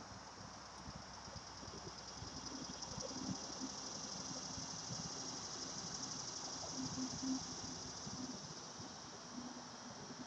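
Steady high-pitched chorus of insects in the trees, with a faint low hum that swells and fades in the middle.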